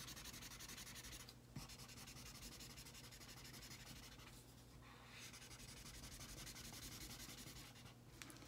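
Felt-tip marker scribbling on paper as an area is coloured in: faint, quick back-and-forth strokes, with brief pauses about one and a half seconds in and again around four and a half seconds.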